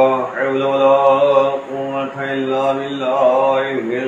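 A man's voice chanting unaccompanied in long, steady held notes, with brief breaks for breath about one and a half seconds in and again near the end.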